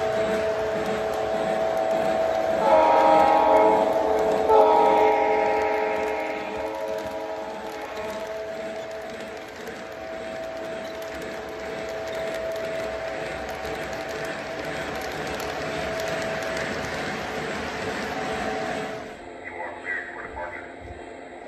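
Model Santa Fe GP-35 diesel locomotive's onboard sound running as the train rolls past, a steady engine drone with two horn blasts a few seconds in, over the rumble of wheels on the track. The sound drops suddenly near the end.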